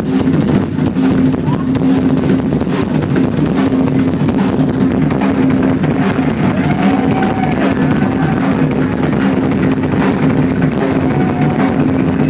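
Rock drum kit solo played live, with a steady stream of fast hits on toms, bass drum and cymbals and a steady low drone underneath.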